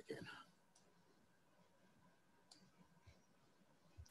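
Near silence, with a few faint, sparse clicks.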